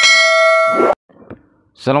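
A single bright bell-chime sound effect, several steady ringing tones together, that marks the notification-bell icon being clicked in a subscribe animation; it lasts about a second and cuts off suddenly. A man starts speaking near the end.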